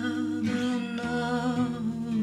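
Female voice humming a wordless melody with vibrato over sustained acoustic guitar chords; the chord changes about halfway through.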